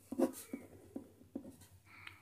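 Pen writing letters on paper: a faint series of short, irregular scratching strokes.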